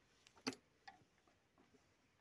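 Near silence with one sharp click about half a second in and a few faint ticks after it: a tractor's dashboard ignition key switch being turned.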